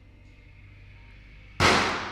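Quiet room tone, then about one and a half seconds in a single sudden loud bang that dies away with a short echo.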